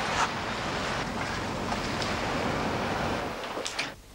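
A car running as it pulls away, heard as a steady rushing noise that stops abruptly near the end.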